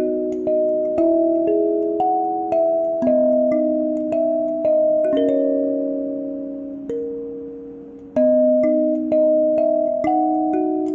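Gecko K17CAS 17-key flatboard kalimba played with the thumbs: a slow melody of plucked notes and two- or three-note chords, each ringing and fading away. About halfway through, one chord is left to ring and fade for about three seconds before the playing picks up again.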